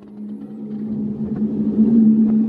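A low, steady droning hum from the queue's ambient soundtrack, fading in and growing louder over the two seconds, with a few faint clicks.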